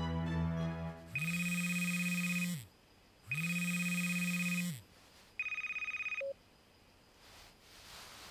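Mobile phone ringtone: a fast-warbling, bell-like ring sounding twice for about a second and a half each, then a shorter third ring that is cut off as the call is picked up. Music fades out just before the first ring.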